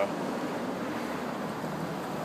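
Steady, even hiss of city street background noise, with no distinct sounds standing out.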